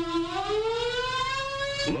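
Civil defense warning siren sounding an alert. Its tone is at its lowest at the start, then rises steadily in pitch and levels off near the end.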